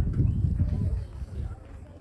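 Low, irregular rumbling of wind buffeting the microphone, easing off in the second half, with a man's voice faintly heard in the first second.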